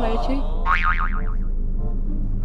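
Comic cartoon "boing" sound effect with a fast wobbling pitch, lasting under a second and fading out, over light background music.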